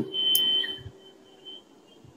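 A thin, steady, high-pitched electronic tone, loudest for the first second and then much fainter.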